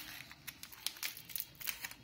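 Plastic Oreo biscuit wrapper crinkling in irregular crackles as it is cut open with scissors and handled.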